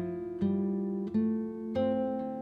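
Background music: an acoustic guitar playing plucked chords, a new chord struck about every two-thirds of a second, each ringing and fading away.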